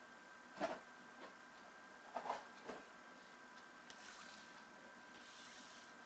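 A few short, soft taps and slides of trading cards being handled on a tabletop, the clearest about half a second and two seconds in. Under them runs a faint, steady electronic whine.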